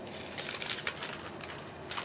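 Passenger train running along the line: steady rolling noise of wheels on rails, with irregular sharp clicks and rattles.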